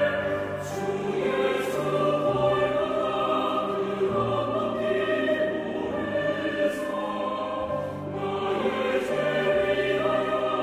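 Choir singing a slow sacred song in a classical style, with long held notes over sustained instrumental accompaniment.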